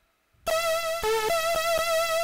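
Teenage Engineering Pocket Operator pocket synthesizers playing a chiptune loop: a wavering, vibrato-laden lead melody over a fast clicking beat. It starts about half a second in, after a brief gap of silence.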